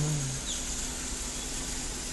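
Steady low hum and hiss of a car cabin with the engine idling, with one faint short high chirp about half a second in.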